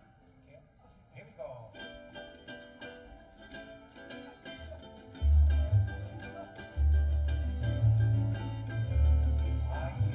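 Ukulele strummed in a rhythmic intro, starting about two seconds in after a quiet opening. About five seconds in, deep bass notes join, much louder than the ukulele.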